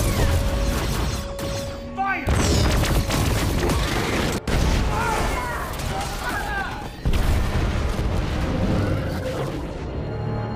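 Film sound mix of a space battle: booming explosion and weapon-fire effects over a score, with sudden loud hits about two seconds in and again about seven seconds in.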